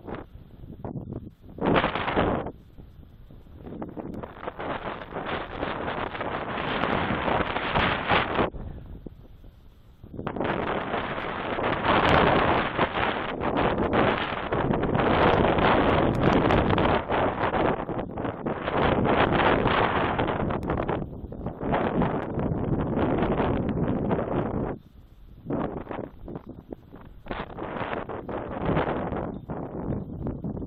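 Wind buffeting an outdoor camera microphone in strong gusts, a loud rushing rumble that swells and drops off, with brief lulls about ten seconds in and again near the twenty-five-second mark.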